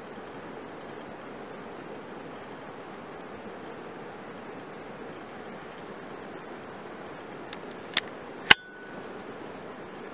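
Steady, even rushing noise, with two sharp clicks about half a second apart near the end, the second one louder.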